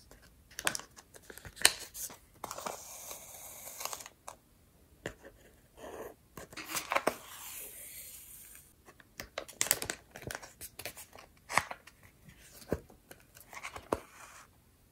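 Hand-sewing the binding of a paper booklet: paper rustling and small clicks as the pages are handled and clipped with a clothespin, and two longer rasps as the sewing thread is drawn through the paper.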